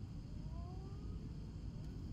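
Jet airliner cabin noise as the plane rolls along the taxiway: a steady low rumble of the engines and wheels.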